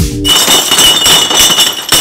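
Electronic music cuts off a moment in, giving way to a dense, loud clatter of many glass beer bottles clinking against each other on a bottling line, with a steady high whine from the machinery.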